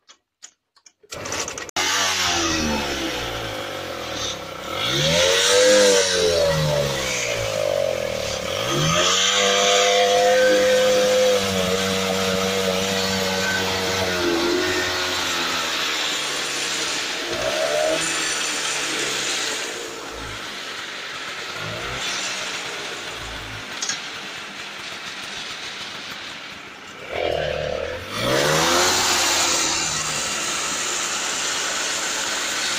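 Scooter engine driving a homemade saw machine; it starts up about two seconds in and runs, its speed rising and falling repeatedly as it is revved.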